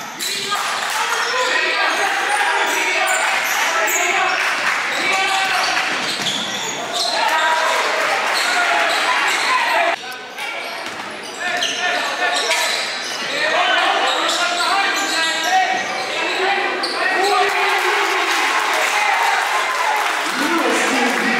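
Basketball dribbled on a hardwood gym floor, amid the overlapping voices of players and spectators echoing in the gym.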